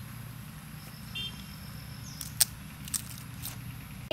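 A few sharp clicks and taps as a small clay stove is tended by hand, the loudest a little past halfway, over a steady low hum.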